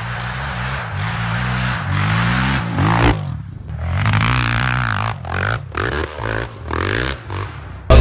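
Honda TRX450R quad's single-cylinder four-stroke engine revving hard on and off the throttle, its pitch climbing and falling again and again, with several brief cuts in the second half.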